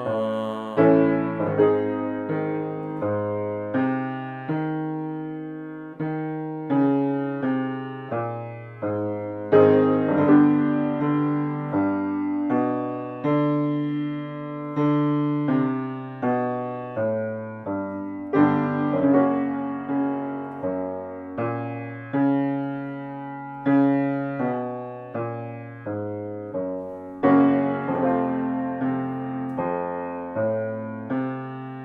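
Grand piano playing a vocal warm-up accompaniment: chords and short note patterns, each struck and left to fade, with louder chord attacks every few seconds. No voice is heard.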